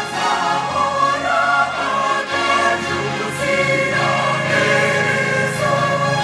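Large mixed choir of women's and men's voices singing a sacred song together in harmony, with several voice parts holding notes at once.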